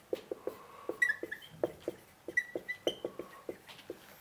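A marker writing on a whiteboard: a quick run of light taps and strokes, with a few brief high squeaks as the pen drags across the board.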